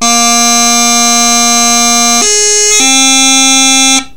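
Highland bagpipe practice chanter played very slowly: a held low A, then about two seconds in a G grace note lifted for about half a second, and, as it comes down, a held B that cuts off sharply.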